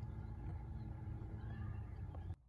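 Faint steady low hum under background noise, without change or distinct events.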